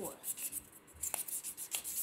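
Fingers rubbing and turning plastic ping pong balls close to the microphone: a faint scratchy handling noise with two light clicks, one about a second in and one near the end.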